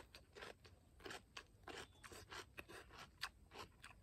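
A person chewing a mouthful of crisp raw cucumber, with faint, irregular crunches several times a second.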